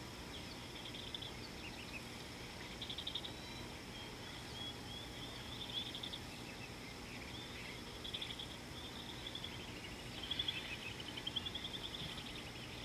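Birds calling in the bush: bouts of short, high chirps and rapid trills every few seconds, the liveliest run near the end, over a steady high-pitched hum and a low background rumble.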